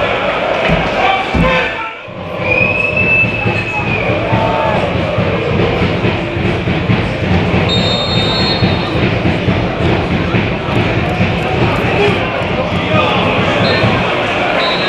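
Football stadium ambience: a steady mix of players' shouts and crowd voices, with a referee's whistle held for about a second and a half near the start.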